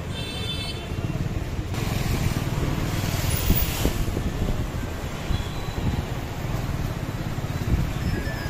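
Road noise while riding on a scooter through busy street traffic: a steady low rumble of engine and wind on the microphone, with a short high ringing tone about half a second in and a louder hiss around the middle.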